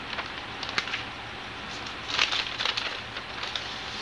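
Sheets of lined notebook paper rustling and crinkling as they are handled, with a short rustle about half a second in and a longer run of rustling around two to three seconds in, over a steady background hiss and hum.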